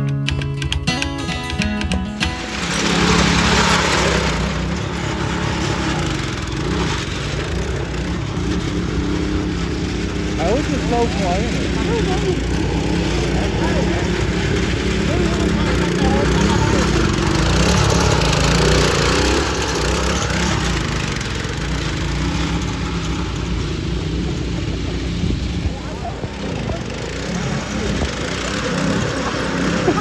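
Music for the first couple of seconds. Then a riding lawn mower's small engine runs steadily as it is driven, with voices and music over it.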